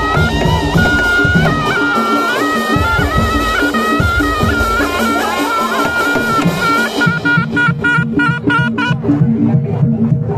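Javanese traditional ensemble: a slompret, a wooden double-reed shawm, plays a wavering, ornamented melody over drums and metal percussion. About seven seconds in the shawm stops and the percussion carries on in a steady, even beat.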